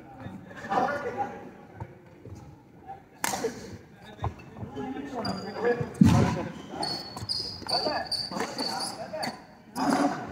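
Badminton rally in a reverberant sports hall: sharp racket strikes on the shuttlecock about three seconds apart, the loudest about six seconds in. Sports shoes squeak on the hall floor in the second half.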